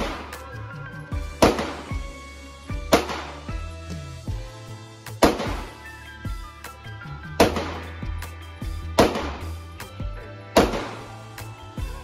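Six handgun shots fired in an indoor range, spaced about one and a half to two seconds apart, each sharp crack followed by a short echo. Background music with a deep bass line plays under them.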